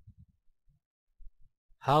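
A pause in a man's narration: near silence broken by a few faint, short, low puffs of breath on the microphone. Speech resumes near the end.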